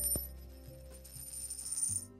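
Background music with a high jingling shimmer held over it, which cuts off suddenly at the end.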